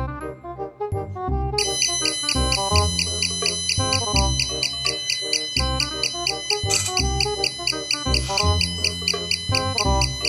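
An Arduino alarm's buzzer sounds an evenly repeating, rapid high-pitched electronic beep that starts abruptly about a second and a half in, over background music.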